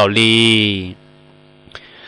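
A man's narrating voice draws out one long syllable whose pitch sinks slowly. It is followed by a pause of about a second in which only a faint steady electrical hum remains.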